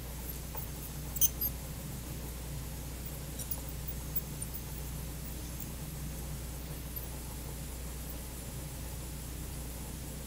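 Satelec P5 Newtron piezoelectric scaler with an H3 tip on low power, worked against plastic typodont teeth: faint high squeaks and chirps from the vibrating tip on the plastic, over a steady low hum, with a slightly louder cluster about a second in. The squeak comes from the typodont, not from scaling real teeth.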